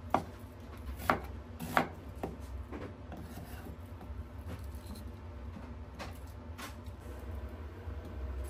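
Kitchen knife slicing an onion into wedges on a wooden cutting board: a few sharp knocks of the blade on the board, most in the first three seconds and two more about six seconds in.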